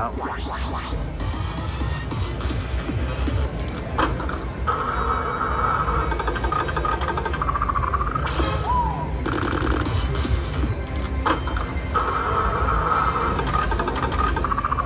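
Pinball slot machine's bonus-round music and electronic sound effects: a steady synthesized jingle with a few sharp clicks, a short falling tone a little past halfway, then a brief run of rapid ticks as a pinball shot is awarded. A constant low casino rumble lies underneath.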